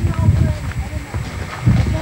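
A mare's hooves at a walk on a dirt path, under a steady low rumble on the microphone.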